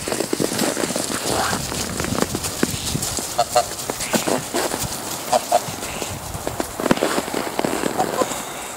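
Domestic geese calling with short honks and chatter, some honks in quick pairs about three and a half and five and a half seconds in.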